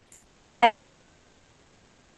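A woman says one short word ("and") over a video-call connection, and the rest is near silence.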